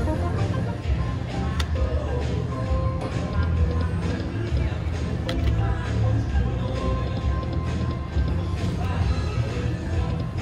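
Huff N Puff video slot machine spinning its reels, with its electronic spin sounds and jingles running continuously over casino-floor music and chatter.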